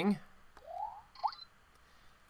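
Botley coding robot's remote programmer giving short electronic chirps as its command buttons are pressed: a rising chirp about half a second in, then a brief high beep with a second quick rising chirp about a second later.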